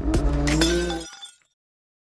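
Channel intro logo sting: a sound-effect jingle with steady tones and a few sharp crash-like hits, fading out about a second in.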